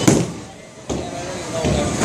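A bowling ball hits the lane with a loud thud just as it is released, and the sound dies away over half a second. About a second in there is a small click, and the background noise of a busy bowling alley, with voices, builds up again.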